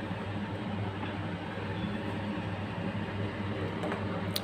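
Black chickpea curry boiling hard in a steel pan: a steady, even bubbling hiss over a low hum.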